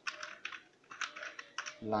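Computer keyboard being typed on, a quick run of about six or seven separate keystrokes as a word is entered into a search box. A man's voice starts near the end.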